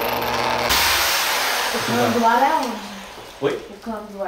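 Electric drill running as it bores into the wall for a screw, stopping about a second in.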